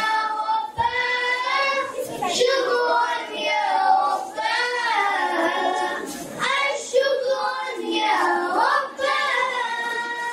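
A group of children singing a song in Urdu, with long held notes.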